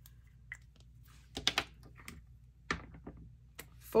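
A die rolled into a dice tray: a quick cluster of soft clicks about a second and a half in, then two single taps later.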